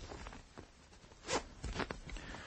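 A clothing zip being pulled: one short rasp just past halfway, then two quicker ones near the end, as garments are taken off.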